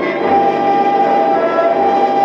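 Orchestral instrumental passage of a 1956 Japanese popular song playing from a 78 rpm record on a Paragon No. 90 acoustic phonograph. Held notes sound over an even hiss of record surface noise.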